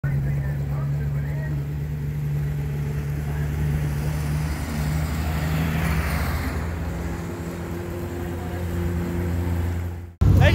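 Vehicle engines idling steadily. A truck drives close by near the middle, bringing a louder rush of noise.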